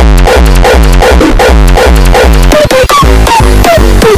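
Raw hardstyle track playing loud, with a pounding bass kick drum under a rapid pattern of falling synth sweeps. The beat briefly breaks up about three seconds in.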